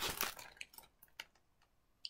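Paperback picture book being handled and turned toward the camera: a brief rustle of paper and handling in the first half-second, then a few faint clicks.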